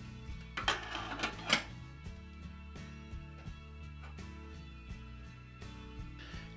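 Soft background music, with a brief clatter of metal about a second in as a stainless steel pressure cooker's lid is fitted and closed.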